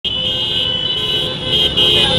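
Several motorcycle horns sounding together in one long, steady, high-pitched blare over the low rumble of many motorcycle engines as a convoy rides past.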